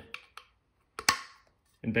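Carote removable pan handle clamping onto the rim of a nonstick frying pan: a couple of light clicks, then a sharp double click about a second in as the handle locks into place.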